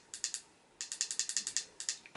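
A quick run of small, sharp plastic clicks, ratchet-like, from the control on a battery LED advent calendar candle being worked by hand: a few clicks at first, then a fast dense run from about a second in.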